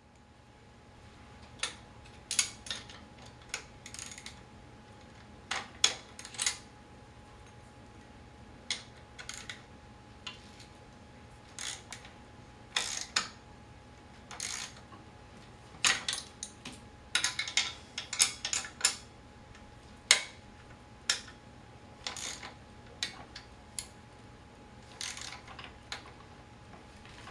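Irregular sharp metallic clicks and clinks of a wrench working the bolts of a wheelchair's wheel-lock bracket as they are tightened, some in quick clusters, with short pauses between.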